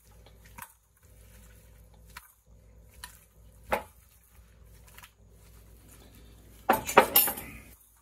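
Seasoned potato chunks being tossed in a glass baking dish, with a few scattered clinks and knocks over a low hum. A louder clatter of the dish and its contents comes near the end.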